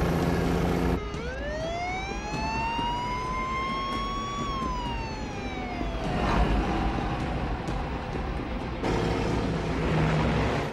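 A big truck's diesel engine rumbling steadily, then an emergency-vehicle siren winding up in one slow rising wail about a second in, peaking a few seconds later and falling away, over traffic noise. The engine rumble comes back near the end.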